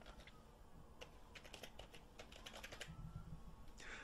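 Faint computer keyboard typing: a quick run of keystrokes starting about a second in.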